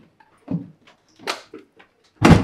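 A room door being opened: two brief knocks about a second apart.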